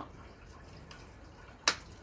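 A single sharp click near the end: the recline lock lever on an Outsunny zero-gravity rocking chair's metal frame being pushed to the top and clicking into place, locking the chair in its reclined position.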